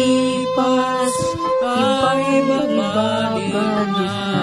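A young voice singing a Filipino pop (OPM) song over instrumental accompaniment, holding long notes.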